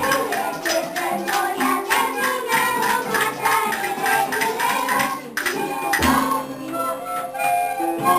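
Children singing a song with light percussion, a metal triangle among it, keeping a quick steady beat. A little after five seconds in the beat stops and held melody notes carry on.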